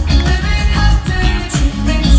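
Live pop-rock band playing loud, with a heavy bass and drum beat under a male lead vocal, in a large arena.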